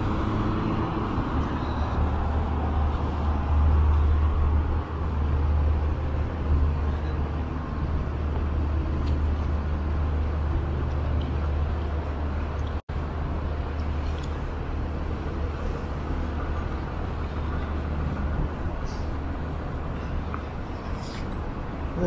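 Wind buffeting a small handheld camera's microphone: a steady low rumble with the wash of street traffic behind it. The sound drops out for an instant about halfway through.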